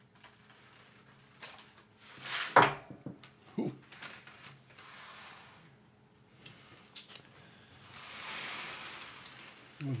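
Loose seeds and paper bags handled over a metal tray: scattered clicks and rattles, a sharp clatter about two and a half seconds in, and a soft rush of spilling seeds for a second or so near the end.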